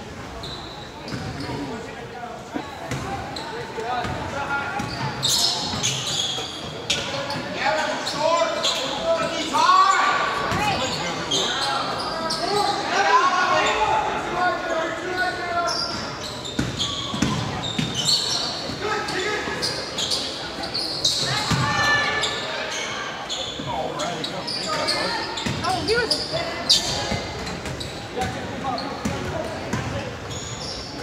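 Basketball being dribbled on a hardwood gym floor, with sneakers squeaking and players and spectators calling out indistinctly, all echoing in a large gymnasium.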